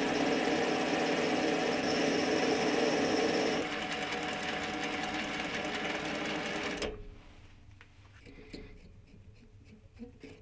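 Small metal lathe running, its threading tool cutting an external thread on a stainless steel part; the cutting noise eases a little about three and a half seconds in while the spindle keeps turning. The machine sound stops abruptly about seven seconds in, leaving faint clicks of the part being handled.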